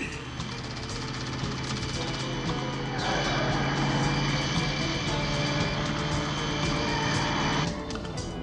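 Dramatic background music over car engine and road noise during a car chase. About three seconds in, a louder rush of engine and tyre noise comes in and cuts off abruptly near the end.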